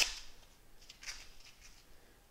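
A single sharp plastic click as the air tube's connector snaps onto a KAATSU pneumatic arm band, followed by faint handling rustles and small ticks about a second later.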